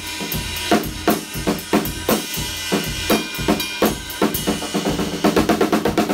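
Acoustic drum kit being played live: a steady beat of drum and cymbal strokes, closing with a quick run of rapid hits near the end.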